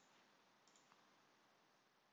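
Near silence: faint room hiss with a couple of faint computer mouse clicks, about two-thirds of a second and a second in.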